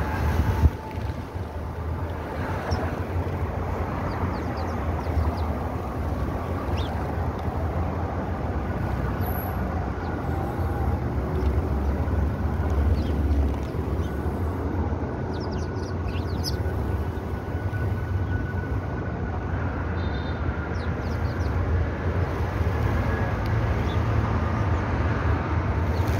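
Steady low outdoor rumble with faint, scattered high chirps and a sharp knock just under a second in.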